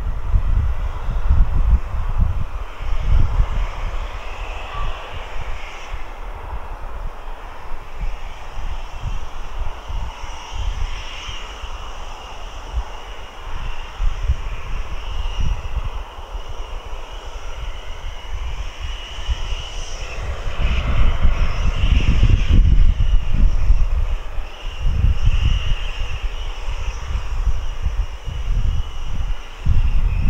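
Steam locomotive working hard at a distance: a steady rumble of exhaust and escaping steam with uneven low pulses, growing louder about twenty seconds in.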